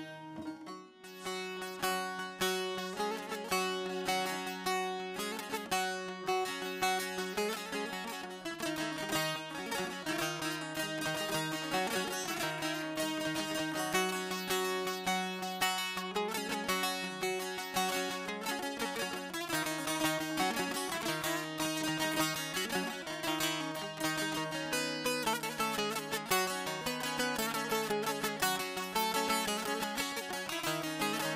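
Solo saz (bağlama, Turkish long-necked lute) playing the instrumental introduction to a folk song: quick, busy plucked melody over a steady ringing drone of the lower strings. It starts about a second in and runs without singing.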